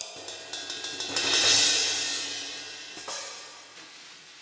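Sampled vintage cymbals from the Abbey Road Vintage Drummer library, played from a keyboard. A few light ticks lead into a cymbal that swells and rings out, dying away over about two seconds, with a lighter hit about three seconds in.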